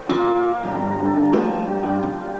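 Live rock band playing an instrumental passage, guitar over keyboards and drums, with no vocals. The full band comes back in with a strong hit right at the start after a brief drop in level.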